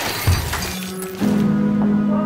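The fading tail of a glass-shattering sound effect, with a sharp hit about a third of a second in. After about a second, music with held keyboard chords comes in.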